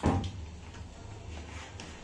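Plastic child-resistant cap on a Winsor & Newton bottle being pressed down and twisted to unlock it. There is a sharp click at the start, then a few faint clicks as the cap turns.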